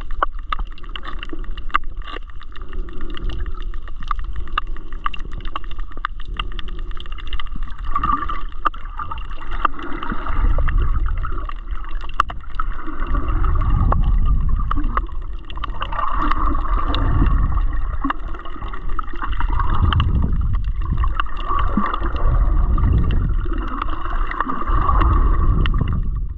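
Muffled underwater sound picked up by a submerged camera: low rumbling surges of moving water that swell and ease every few seconds, with scattered sharp clicks and a faint steady hum.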